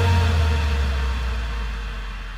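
Future house track at a transition: a deep sub-bass note slides down in pitch and fades out under a dying reverb wash, with no beat.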